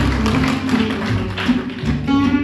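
Gypsy jazz band playing: acoustic guitar picking a lead line over strummed rhythm guitars and double bass.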